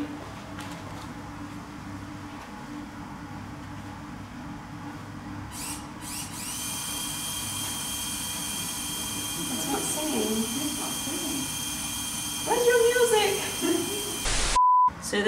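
Small electric motor in a coffin-shaped music box whining steadily from about halfway in, with no tune: its little drive band is slipping and not turning the music mechanism.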